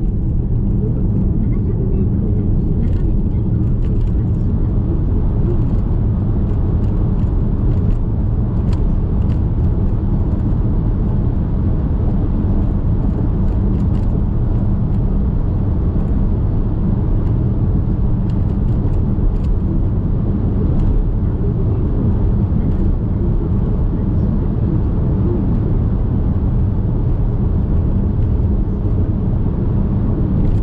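Steady low rumble of tyre and engine noise inside a moving car's cabin, with a few faint clicks.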